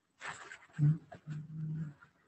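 A man coughs once, then clears his throat in two short voiced pushes.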